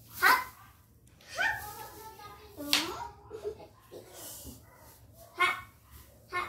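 Young children's voices: several short cries and exclamations with quiet gaps between them.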